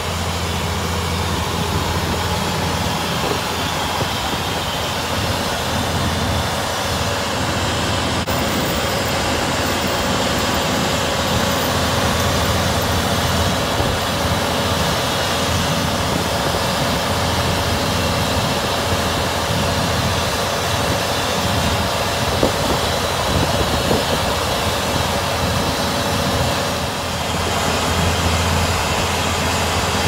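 Truck-mounted water well drilling rig running steadily, its engine and drilling machinery giving a constant loud drone, with a few light knocks in the second half.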